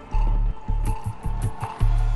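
Tense background music: a pulsing deep bass, about two pulses a second, with ticking percussion on top.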